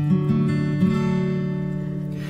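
Acoustic guitar strummed: a chord struck sharply at the start and left to ring, with a chord change just under a second in, as the introduction to a sung carol verse.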